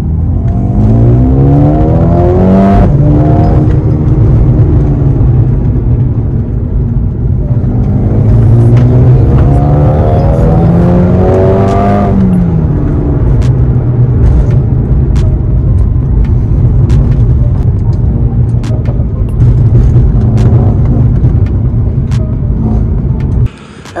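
Mercedes-AMG A35's turbocharged four-cylinder heard from inside the cabin, pulling hard in Sport Plus. The engine note climbs, drops at a gear change about three seconds in, then climbs again for several seconds until about twelve seconds in. It then eases off into a steady loud drone with road rumble and scattered sharp pops.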